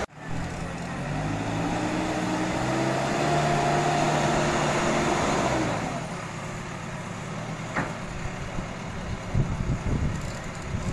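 JCB backhoe loader's diesel engine running under load, its pitch rising slightly and holding, then dropping away about six seconds in to a lower, rougher running.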